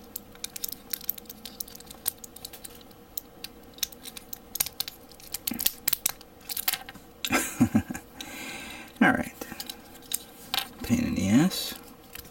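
Plastic parts of a 1/100 Master Grade 00 Raiser Gunpla kit being handled and pressed together: many small sharp clicks and taps. In the second half, a few short muttered voice sounds join in.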